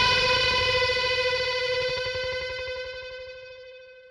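A distorted electric guitar chord is left ringing out as the last sound of a metal song, steady in pitch and fading away to nothing near the end.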